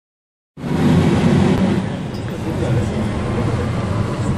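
Interior noise of an articulated Van Hool city bus: a steady low rumble of engine and road, starting abruptly about half a second in.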